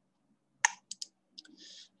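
A single sharp computer mouse click about two-thirds of a second in, advancing the slide, followed by a few fainter small clicks and a short intake of breath near the end.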